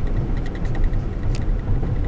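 Cabin noise of a 2006 Ford F-150 with a 5.4-litre V8 under way: a steady low engine and road rumble while cruising.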